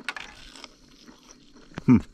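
Crunching bites and chewing of crispy batter-fried carp, small clicky crackles, ending in a short, loud 'hmm' with falling pitch.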